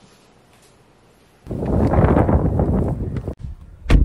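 About a second and a half in, a loud rush of wind noise on the microphone starts abruptly, lasts about two seconds and cuts off suddenly. Just before the end comes a single sharp thump, the loudest moment.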